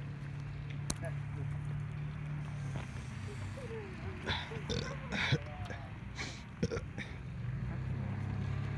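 Faint, indistinct voices over a steady low hum, with a sharp click about a second in.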